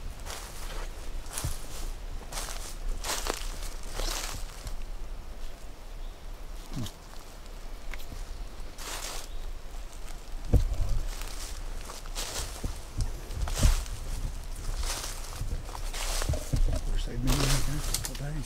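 Footsteps crunching and rustling through dry leaf litter on a forest floor, an irregular step every half second to second, with a few low bumps from the camera being handled.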